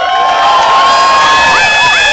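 Rally crowd cheering and whooping: many voices holding long, overlapping high yells.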